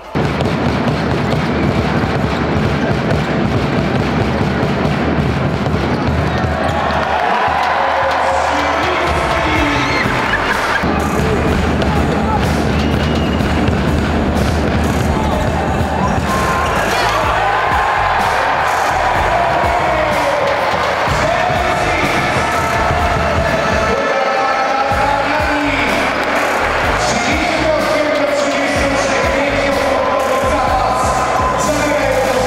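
Background music at a steady level, laid over the sound of a basketball game in an arena, with balls bouncing on the court.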